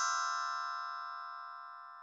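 The fading ring of a bright chime sound effect: many bell-like tones, struck just before, dying away slowly.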